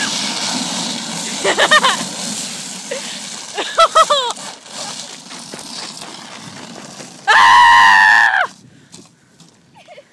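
Plastic recycling bin scraping steadily as it slides over an icy driveway, with a rider's short squeals twice early on. About seven seconds in comes a loud, held scream lasting just over a second, the loudest sound, then it goes quieter.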